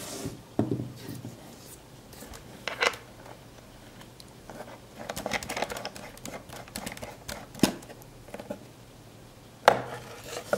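Hands handling a plastic bottle and its screw-on hose fitting: scattered sharp clicks and knocks with light plastic crackling, the loudest click near the end.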